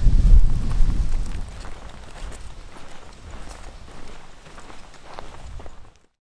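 Wind buffeting the microphone for about the first second and a half, then quieter footsteps of people walking on dry grass and sandy ground.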